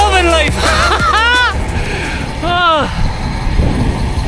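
A man's excited wordless whoops and yells, a few short arching calls in the first three seconds, over the tail of background music that stops about a second and a half in, with wind and road noise from riding.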